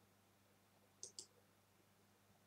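Near silence, with a faint double click about a second in: a computer input button pressed and released, accepting the text-angle prompt in the drafting software.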